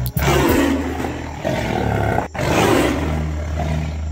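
Lion roaring: one long roar broken off abruptly a little over two seconds in, then a second, shorter roar that fades away, over a steady low hum.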